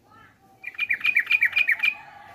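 Yellow-vented bulbul (trucukan) singing a loud, fast phrase of about eight to ten short repeated notes, starting about half a second in and lasting just over a second.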